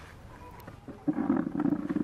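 A macaque's low, rough growling call, lasting about a second and starting about a second in.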